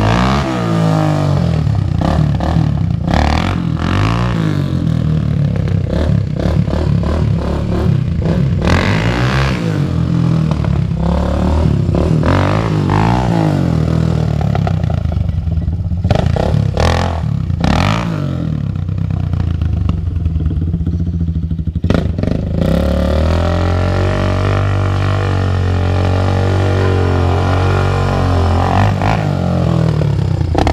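300 cc ATV engine revving up and falling back again and again as the quad is ridden hard, with a few sharp knocks along the way. For the last several seconds it runs at a steadier speed.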